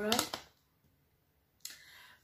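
The end of a spoken word, a short near-silent pause, then from about one and a half seconds in a faint crinkling rustle as the kraft-paper snack pouch is handled.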